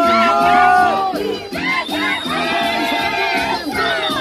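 Andean carnival music with high voices singing and letting out long held cries, over the noise of a crowd; the cries trail off with a falling pitch.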